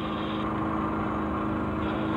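Steady engine hum with a constant tone, as from an idling engine, with a hiss above it that drops away about half a second in and returns near the end.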